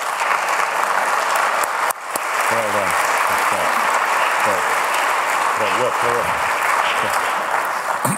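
Audience applauding in a large hall: a dense, steady clapping that swells up at once, holds, and fades away near the end. A man's voice talks briefly under the applause a couple of times.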